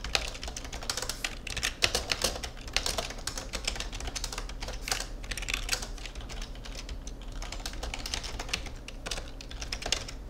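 Typing on a computer keyboard: quick runs of keystrokes with brief pauses, over a steady low hum.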